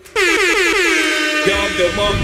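Air-horn sound effect in a title sting: a loud blast of many tones that falls in pitch and then holds steady, with a deep rumble coming in about a second and a half in.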